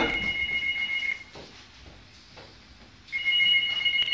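A telephone ringing: a steady electronic two-note tone lasting about two seconds, a pause of about two seconds, then the ring again near the end.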